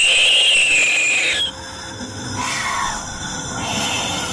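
A sudden, loud, shrill scream that bursts out of silence and lasts about a second and a half, followed by a quieter falling wail.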